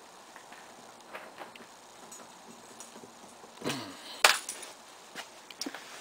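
Handling noises inside a pickup truck cab: a few light clicks and rustles, with one sharp knock a little past the middle.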